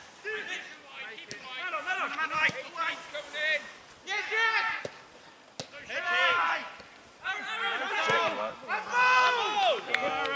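Footballers shouting and calling to each other across the pitch, several distant voices coming and going in short calls, with a few sharp knocks, the clearest about halfway through.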